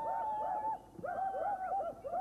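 A penned deer herd calling: many short, high, arched calls overlap, with one longer held call over them in the first second. The calls pause briefly about a second in, then resume.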